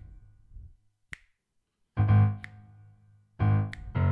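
Left-hand bass chords on a keyboard piano: a low chord fading out, a short pause, then two more chords about a second and a half apart. Short sharp clicks fall between the chords.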